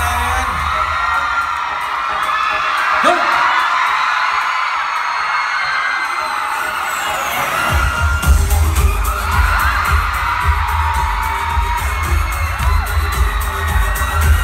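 Loud live pop dance music through a concert PA, heard from the crowd. Its heavy bass beat drops out about two seconds in and kicks back in about eight seconds in, with screams from the audience over the music.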